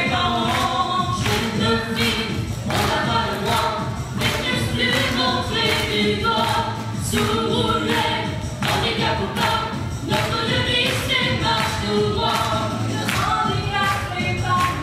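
A group of voices singing a song together over accompaniment with a steady beat.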